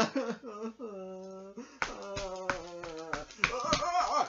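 A man's voice giving long, drawn-out wailing cries that drop in pitch at their ends, followed from about two seconds in by a run of sharp clicks and taps among shorter vocal sounds.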